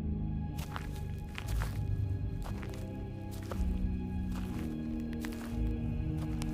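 Background music of sustained low notes, with irregular footsteps in dry leaves starting about half a second in.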